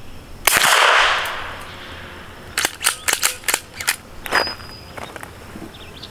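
A single suppressed 9mm pistol shot from an FN 509 fitted with a JK Armament 155LT suppressor about half a second in, its echo dying away over about a second. Then a run of sharp metallic clicks and clacks as the pistol is cleared.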